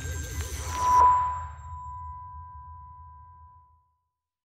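Logo-reveal sound effect: a musical swell that cuts off about a second in on a single bright ping, which rings on as a steady tone and slowly fades with a low rumble underneath.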